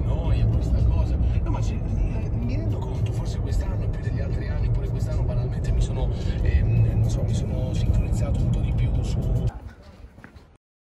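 Steady low rumble of road and engine noise inside a moving car's cabin, cut off abruptly near the end.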